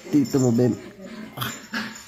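A man's drawn-out, whining cry of pain, about half a second long near the start, as the girl's fingers work at his forehead and brows; it is followed by a couple of brief hissy breaths or rustles.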